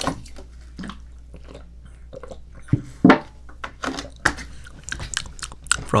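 A man drinking water close to the microphone: irregular gulps, swallows and wet mouth clicks, the loudest about three seconds in.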